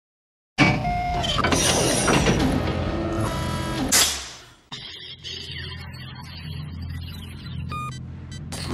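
Electronic intro music with sound effects. It starts suddenly about half a second in, loud and dense, and ends in a hit about four seconds in. It then drops to a quieter low drone with short electronic beeps near the end.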